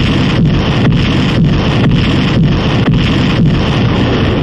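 Very loud explosion sound effect: a continuous rushing, rumbling blast of noise that dips about twice a second, like a short blast sample looped over and over.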